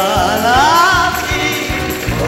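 A woman's solo singing voice on a microphone, with wide vibrato, the melody sliding upward in the first second, over a live band with a steady drum beat.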